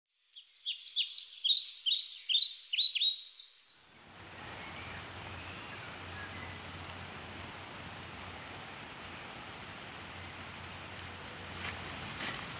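Bird song, a quick run of repeated descending chirps, for about the first four seconds. Then a steady outdoor hiss with a faint low hum, and a few faint ticks just before the end.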